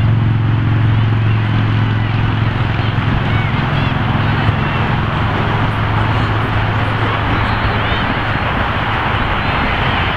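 A steady low mechanical drone over a loud rushing noise, the drone fading about eight seconds in, with faint distant shouts on top.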